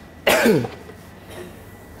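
A single short cough about a quarter of a second in, set off by the pungent fumes of dried chillies heating in a hot wok.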